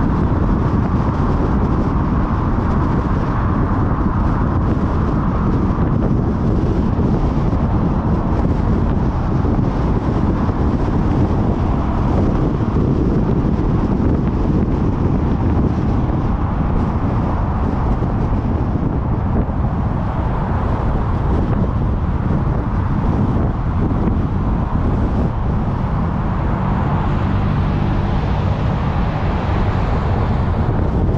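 Loud, steady wind noise on the microphone together with road noise from a car driving. A low hum joins near the end.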